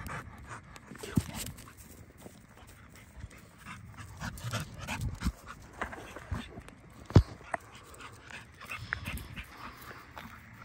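A dog panting from running after a ball, with a single sharp knock about seven seconds in.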